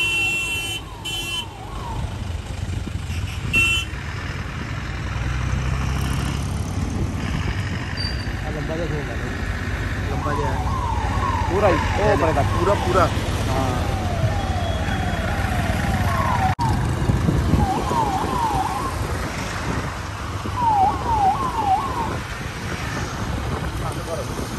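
Police vehicle sirens on a passing convoy, giving bursts of quick rising whoops several times a second, over the steady rumble of the vehicles' engines and tyres. Short high beeping tones sound in the first second or two.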